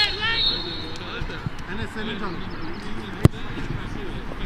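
A football kicked once: a single sharp thud about three-quarters of the way in, among players' scattered shouts on the pitch.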